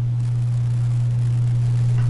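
A steady low hum that does not change.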